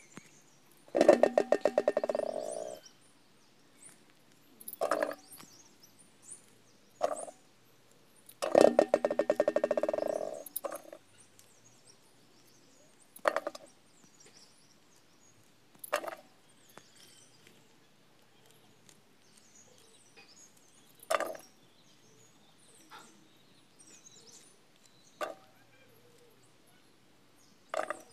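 A loud animal call, about two seconds long, comes twice: about a second in and again near the middle. Between them a small knife peels and cuts wild mushrooms over a metal basin, giving short scrapes and clicks every few seconds.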